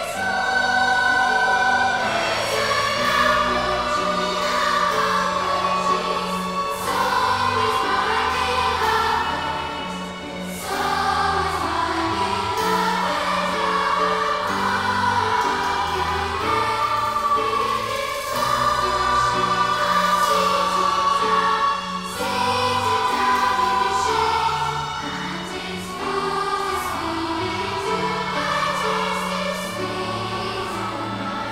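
A large youth choir singing with orchestral accompaniment, low held notes beneath the voices. The sound dips briefly between phrases.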